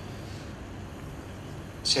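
Steady low hum and room noise with no distinct event. Near the end a man's voice starts over a microphone.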